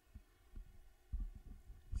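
Handling noise from a handheld condenser microphone being moved: a string of irregular low thumps and bumps, the loudest just after a second in and another right at the end.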